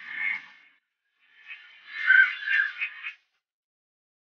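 Ducks quacking in quick, chattering calls, in two bursts: one trailing off at the start and a louder one from about a second and a half in, lasting nearly two seconds.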